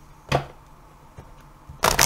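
A deck of oracle cards shuffled by hand, a loud dense papery rustle starting near the end. Before it comes one short tap about a third of a second in.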